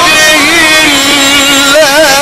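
A man chanting Quran recitation in the melodic tajweed style, drawing out one long note that dips and then holds, breaking into quick wavering ornaments near the end.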